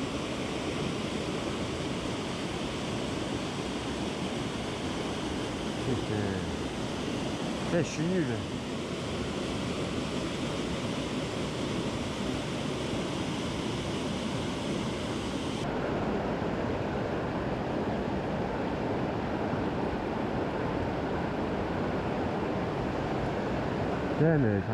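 Steady rushing of a rocky mountain stream pouring over a small cascade. About two-thirds of the way through, the rush turns abruptly duller, losing its highest hiss.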